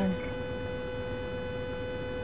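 Steady electrical hum with a constant mid-pitched whine, interference in a police dash-camera recording.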